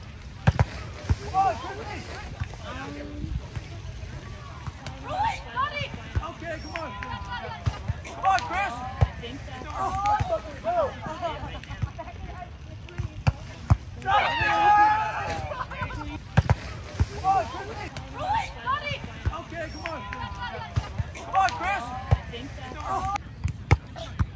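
A grass volleyball rally: several sharp smacks of hands and forearms hitting the ball, with players shouting calls to each other between the contacts. A louder drawn-out shout comes about halfway through.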